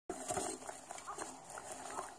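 Chickens clucking quietly: a few short, faint calls over background hiss.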